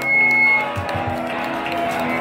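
Electric guitar held notes ringing on through the amplifiers, with a high feedback-like tone in the first moment and a couple of low thumps about a second in.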